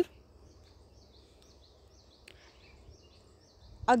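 A quiet pause with faint background noise and a small bird chirping in the distance: short, high chirps at about three a second. There is one soft click about halfway through.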